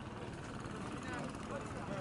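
Faint outdoor ambience of indistinct distant voices over a low, steady rumble.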